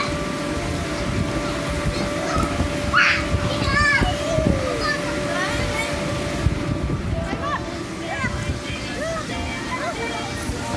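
Small children's voices calling out and playing inside an inflatable bounce house, over a constant low rumble with soft thuds of bouncing on the vinyl floor and a steady hum.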